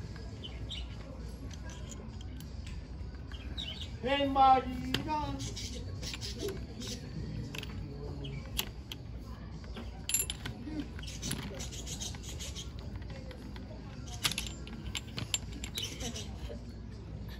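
Small metallic clicks and taps from a drill's keyed chuck as a bit is fitted and the chuck is tightened with a chuck key. A person's voice calls out briefly about four seconds in.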